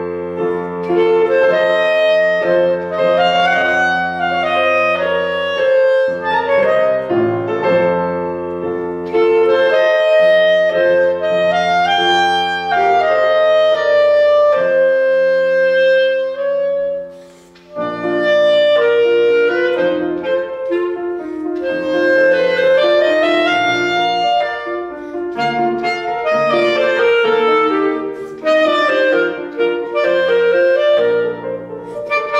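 Clarinet playing a flowing melody with grand piano accompaniment, with a short break about halfway through before both resume.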